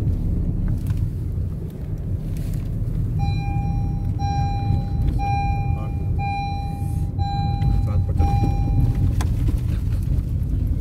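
Car cabin rumble from road and engine while driving. An electronic beeper sounds six steady, evenly spaced beeps, about one a second, starting about three seconds in.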